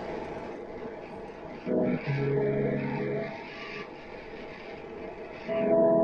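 Shortwave broadcast heard on a one-tube 6J1 SDR receiver: band hiss under held music notes that come in about two seconds in, fade to hiss, then return near the end.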